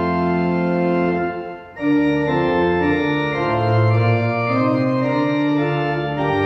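Church organ played in sustained, full chords with bass notes held underneath. The sound dips briefly between phrases about a second and a half in, then the next chords begin.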